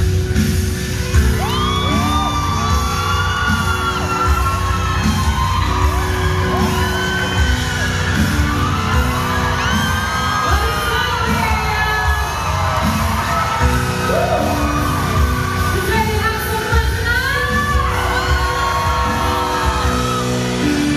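Live concert music through a PA: voices singing long, gliding lines over amplified band music with a steady low beat.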